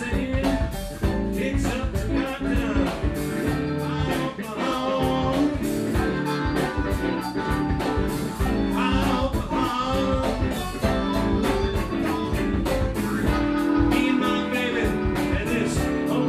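Live electric blues band playing at a steady level: drum kit, keyboard and electric guitar, with a lead line that bends in pitch every few seconds.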